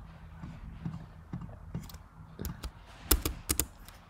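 Computer keyboard keystrokes: a few light taps, then a quick run of sharper clicks between about two and a half and three and a half seconds in.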